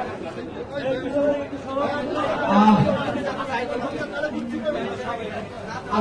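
Crowd chatter: several people talking at once, with one voice coming through louder about two and a half seconds in.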